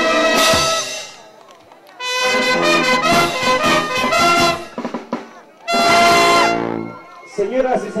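Peruvian brass band (banda filarmónica) of trumpets, trombones, tuba, saxophones and clarinets with bass drum and cymbals playing the end of a piece. A held chord cuts off about a second in, a short phrase follows, and a final held chord cuts off about a second before the end.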